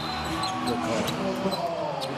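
Basketball arena ambience during a dead ball: a steady murmur of faint players' voices, with a couple of sharp knocks on the hardwood court about a third of a second and a second in.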